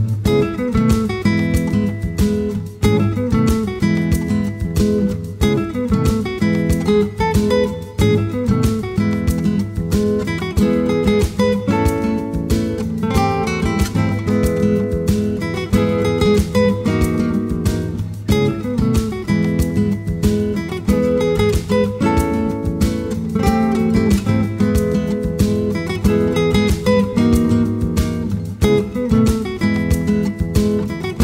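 Background music led by acoustic guitar, with strummed and plucked notes in a steady, continuous pattern.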